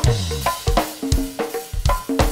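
Live go-go band instrumental groove driven by the drum kit: kick, snare, hi-hat and cymbals in a quick, even beat of about five strikes a second, with short pitched conga tones between them. A low note slides downward right at the start.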